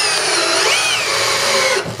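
Cordless drill driver driving a wood screw into timber: a steady motor whine that rises briefly about a second in, then falls in pitch as the screw goes deeper, and stops shortly before the end. No crack of splitting wood, though the screw goes in close to the board's edge.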